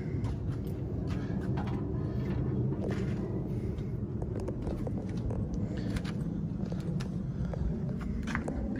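Steady low rumble of wind on the microphone, with scattered faint clicks and footsteps.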